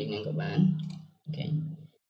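A man talking, with a mouse click about midway through.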